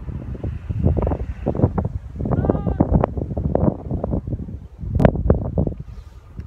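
Wind buffeting a phone's microphone in gusts, with a sharp knock about five seconds in.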